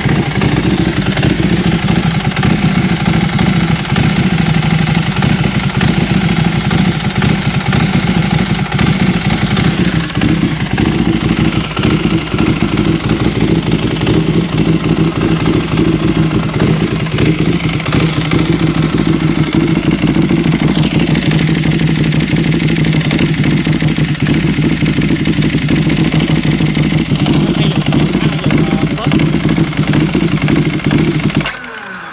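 Motorcycle engine idling steadily, left running to warm the oil before an oil change. A thin high whine joins for a few seconds past the middle.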